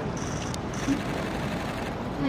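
Steady outdoor crowd ambience with no one speaking, with a faint, high, rapidly pulsing chirp twice and a single small click.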